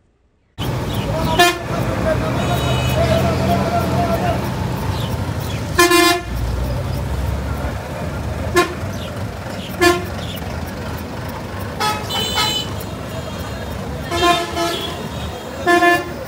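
Busy street traffic noise that starts abruptly about half a second in, with vehicle horns honking in repeated short blasts at irregular intervals and voices in the background.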